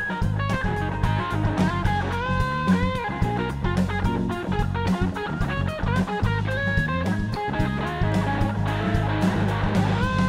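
Live blues-rock band playing an instrumental passage: a Stratocaster-style electric guitar takes the lead with bent notes, over a drum kit keeping a steady beat and a bass line.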